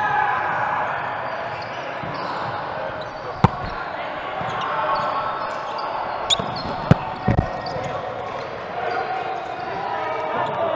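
Volleyball rally in a large echoing gym: sharp smacks of hands striking the ball, one about three and a half seconds in and a quick series around seven seconds, with a spike and block at the net. A steady murmur of players' voices runs underneath.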